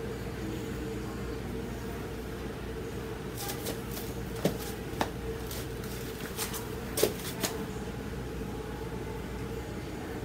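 A few sharp clicks and knocks in the middle of the stretch, two about half a second apart and then two more a couple of seconds later, as painting tools and paint containers are handled, over a steady room hum with a faint steady tone.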